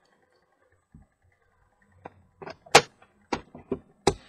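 Handling sounds on a workbench: a soft knock about a second in, then a quick run of sharp clicks and knocks, the loudest near the three-second mark, as a small wire-wound toroid coil is set down and hands work the controls of a benchtop generator.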